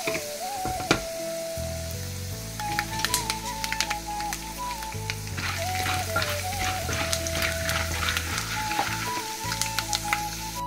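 Dried soybeans frying in hot oil in a pot, sizzling with scattered sharp pops and crackles. Background music with a melody runs over it, and a bass line comes in about a second and a half in.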